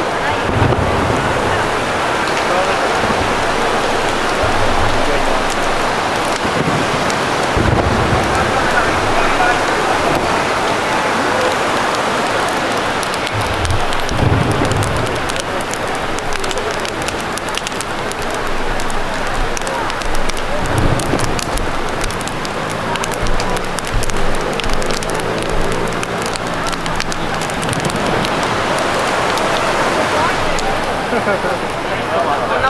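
Steady rush of fast, turbulent river water, with people's voices over it.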